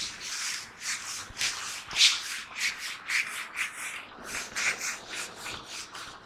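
A handheld whiteboard duster rubbing back and forth across a whiteboard, wiping off marker writing in quick repeated strokes, about two a second.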